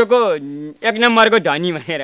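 Speech only: a person talking in Nepali, with a short pause near the start.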